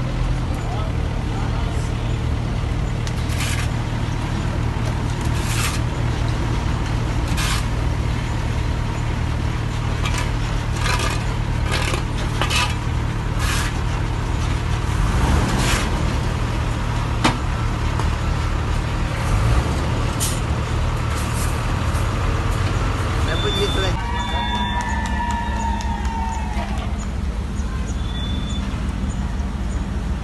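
Heavy army trucks' diesel engines running in a steady low rumble as a convoy drives slowly past, with scattered clicks and knocks. Near the end comes a wavering high squeal.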